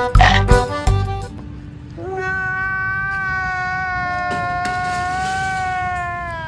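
Edited-in comedy sound effects: a few sharp musical hits in the first second, then from about two seconds in one long held whiny note that droops slightly in pitch near the end, laid over a pained, crying face.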